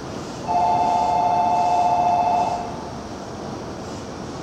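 A two-note electronic signal held steady for about two seconds over the station's background hum, sounding as a train prepares to depart.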